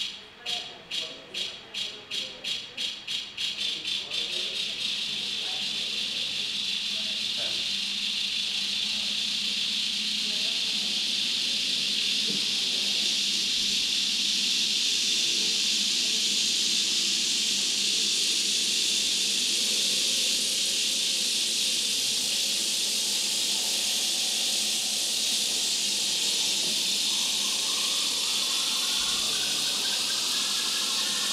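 Live-generated electronic music from Ableton Live: sharp, noisy percussive hits that speed up over the first few seconds until they blur into a steady, dense hiss. A line of rising tones enters near the end.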